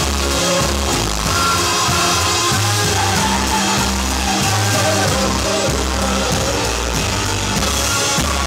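A live rock band playing loudly: a drum kit struck hard over held low bass notes and keyboards, with a singer's voice in the mix.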